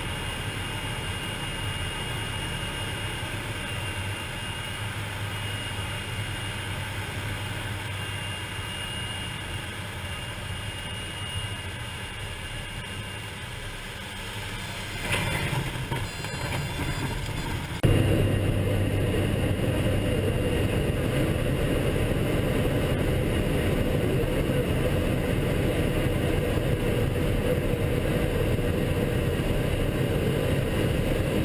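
Small propeller plane's engine and propeller running steadily at low power, heard from inside the cockpit. About fifteen seconds in a rougher rumbling stretch comes as the plane is on the airstrip, and a few seconds later the sound jumps suddenly to a louder, steady engine drone.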